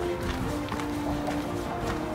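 Background music with held notes that change pitch every half second or so.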